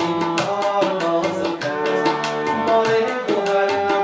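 Harmonium playing a melody in sustained reedy notes over tabla drums beating a quick, steady rhythm.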